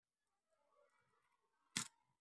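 Near silence with faint rustling, then one sharp click near the end.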